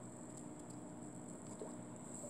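Faint steady room tone: a low hum with a thin high hiss, with a few very faint ticks.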